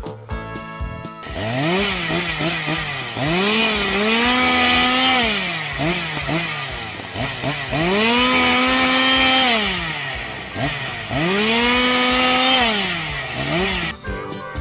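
Gas chainsaw revving repeatedly. Its engine speed climbs, holds at full throttle for two or three seconds and drops back, three long revs with shorter blips between.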